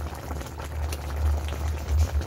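Chicken broth simmering and bubbling in a pot around a whole chicken, with faint clicks of a metal spoon ladling the broth over it.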